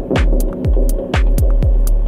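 Electronic dance music from a DJ set: a four-on-the-floor kick drum about twice a second, short hi-hat ticks between the kicks, a steady deep bass and a held synth tone.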